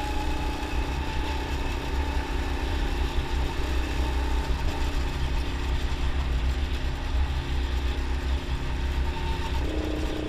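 Go-kart engine running steadily as the kart laps the track, over a heavy low rumble; near the end its note jumps higher.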